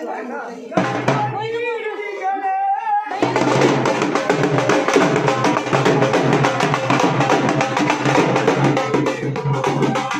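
People's voices for about three seconds, then loud music with fast, dense drumming that starts abruptly and keeps going.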